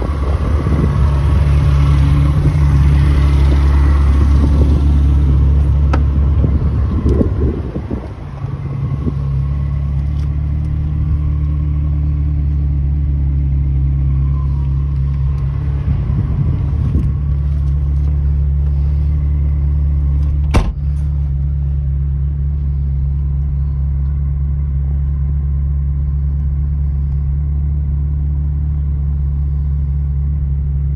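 Ferrari 360 Spider's V8 idling steadily, with a louder, noisier stretch over the first few seconds and a single sharp click about twenty seconds in.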